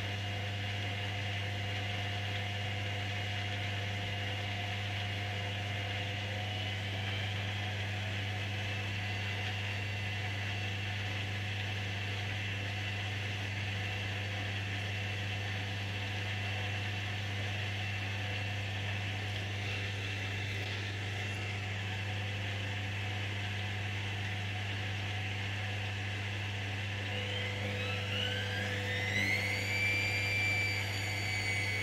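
Hoover DynamicNext washing machine on a spin cycle: a steady motor hum with a thin, even whine. In the last few seconds the whine rises in pitch as the drum speeds up.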